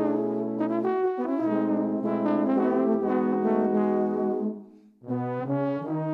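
Six multi-tracked trombones playing sustained chords together, moving from chord to chord. The sound fades out about four and a half seconds in, and the chords start again just before the end.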